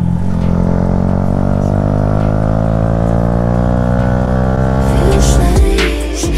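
Yamaha MT-125's single-cylinder engine through an Akrapovic titanium exhaust, revs climbing steadily for about five seconds as the bike accelerates. Near the end it cuts to music with a beat.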